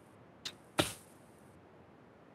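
A quiet pause with two short sounds: a faint click about half a second in, then a brief puff-like whoosh just under a second in that fades quickly.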